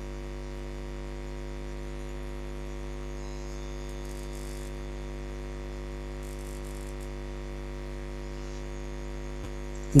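Steady electrical hum with a stack of evenly spaced overtones, unchanging in level: mains hum in the recording chain.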